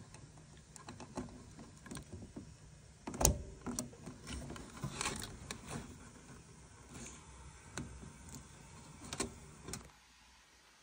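Handling noise as bundles of control wires are moved and a plastic plug is fitted at an air handler's control board: scattered light clicks and rustles, with a sharper knock about three seconds in and another near the end.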